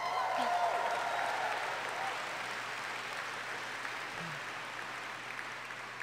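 Audience applauding, loudest at the start and fading away gradually.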